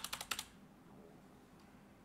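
Computer keyboard keys tapped in a quick run of about half a dozen presses within the first half-second, deleting characters from a text field.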